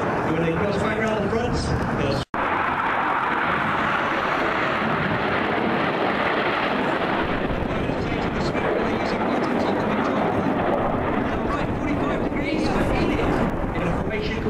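Jet noise from Red Arrows BAE Hawk T1 display jets passing low, a steady rush that swells in the middle and eases off over about ten seconds. The sound cuts out for an instant about two seconds in.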